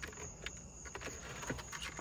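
Faint scattered plastic clicks and handling noise as hands work at the gear selector assembly in the opened center console of an Audi 8Y A3.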